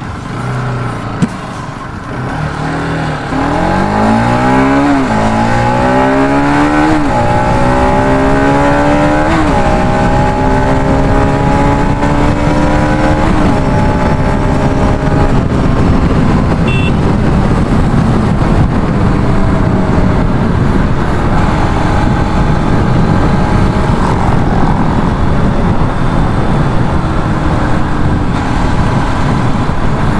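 Motorcycle engine pulling away from a stop and accelerating up through the gears, rising in pitch and dropping at each of four upshifts, then cruising at a steady pitch. Steady wind rush on a helmet-mounted microphone runs underneath, and there is one sharp click about a second in.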